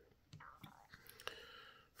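Near silence, with a faint, low voice.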